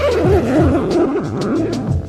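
A person's drawn-out vocal sound, wavering up and down in pitch for nearly two seconds.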